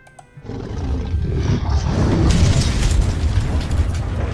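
Cinematic sound effect for an animated intro: a deep, loud rumble that starts suddenly and builds for about two seconds before easing, mixed with music.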